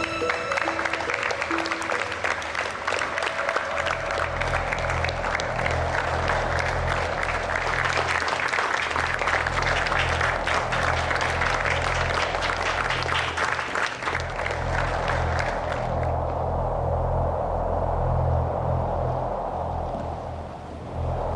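A crowd applauding, many hands clapping, over a music score whose low sustained notes come in about four seconds in. The clapping stops about four seconds before the end, leaving the low music.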